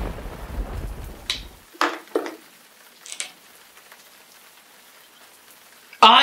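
A roll of thunder over rain that dies away under two seconds in. A few short, faint sounds follow, leaving a low steady background.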